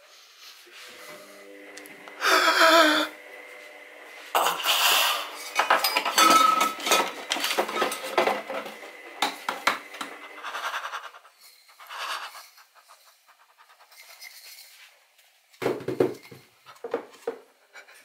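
Kitchen clatter as a cupboard is opened and a glass coffee jar and crockery are handled, with clinks and knocks coming in irregular bursts. The loudest clatters come about two seconds in, around five seconds and near the end.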